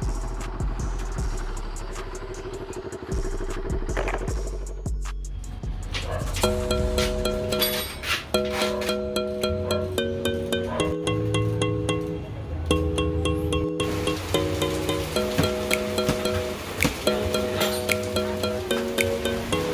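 A CFMoto NK400 motorcycle running at low speed under its rider for the first few seconds, a steady low rumble. About six seconds in, background music takes over: held chords that change every second or two over a light beat.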